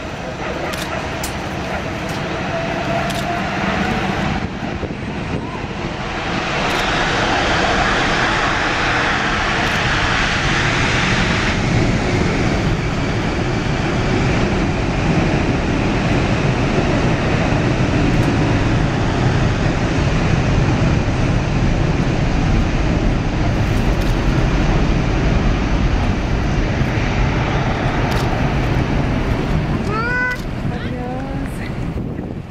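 Boeing C-17 Globemaster III's four Pratt & Whitney F117 turbofan engines spooling up to takeoff thrust. The jet noise grows louder about six seconds in, with a high hiss for several seconds, then runs loud and steady as the takeoff run begins.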